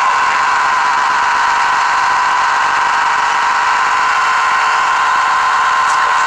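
Playback of a badly damaged VHS tape through the TV: a steady, loud buzzing hiss with a held mid-pitched tone, with no program sound coming through.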